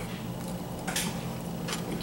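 A person chewing a mouthful of sandwich with the mouth closed: soft mouth sounds, with a short burst of noise about a second in, over a faint steady low hum.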